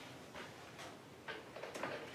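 A few faint, brief rustles of a paper handout being handled.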